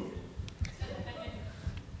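Faint, indistinct voices with light low knocks and room noise, in a lull between loud speech.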